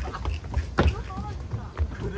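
Footsteps on stone paving, a sharp step about once a second, over a steady low rumble of wind on the microphone, with faint voices nearby.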